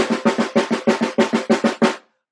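A fast, even drum roll on a drum struck with sticks, about eight strokes a second, cutting off suddenly near the end.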